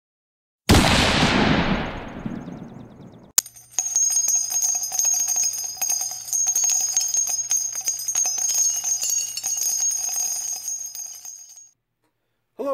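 Intro sound effects: a sudden loud crash that dies away over about two and a half seconds, then a sharp click and about eight seconds of bell-like ringing with many small clicks, fading out near the end.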